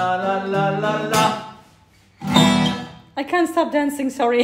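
Steel-string acoustic guitar strummed with a man singing, ending on a chord that rings and dies away about a second in; after a short pause another chord is strummed, and a man's voice comes in near the end.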